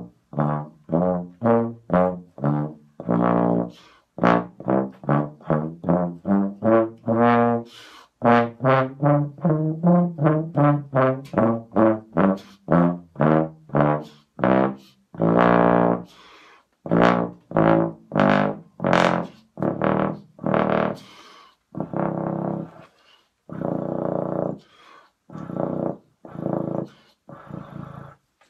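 BBb/FF contrabass trombone played with a Denis Wick 3 tuba mouthpiece: a long run of short, separately tongued notes, about two a second, working down through the low register to pedal A. The last notes grow rougher and more spaced out.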